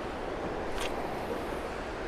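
Steady rush of river water around the boat, mixed with wind on the microphone, and a single light click a little under a second in.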